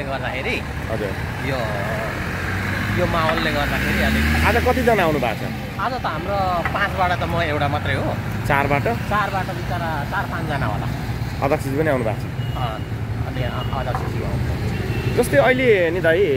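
A man talking over steady street traffic; a vehicle passes close by about three to five seconds in, its engine note rising and then falling.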